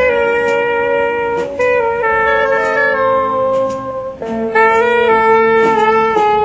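Live jazz: saxophones holding long notes together, changing pitch every second or two, over a band with drums and scattered cymbal strokes. There is a brief drop a little past the middle as the notes change.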